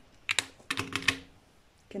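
Small plastic drill pots of a diamond-painting storage box being handled: a few sharp plastic clicks in two quick groups in the first half, like lids snapping and pots being set into the case.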